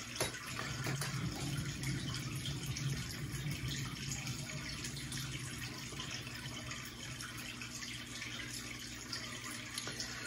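Steady trickle of water from an aquarium, with a low hum that is strongest in the first half.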